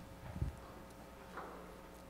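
Quiet room tone in a large hall, with a soft low thump about half a second in and a fainter knock later.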